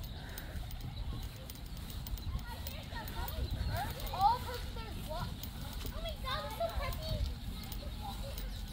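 Wind rumbling on the microphone, with faint, indistinct voices in the background during the second half.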